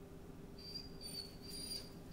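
An Akita dog whining faintly in a thin, high, steady pitch, in a few drawn-out stretches from about half a second in.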